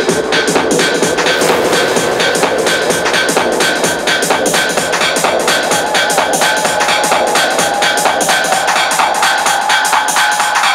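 Electronic dance music from a DJ set: a fast, even beat with the bass cut out and a held synth tone that rises in pitch about halfway through.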